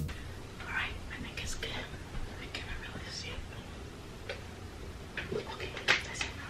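A woman whispering quietly to herself in short bursts, with a sharp click near the end.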